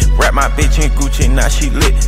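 Hip hop track: a rapped vocal over a deep, sustained bass and a steady beat.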